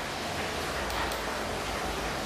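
Steady, even background hiss and room noise with no distinct event.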